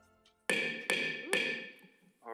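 A gavel struck three times in quick succession, about 0.4 s apart, each knock ringing briefly: the signal that calls the meeting to order.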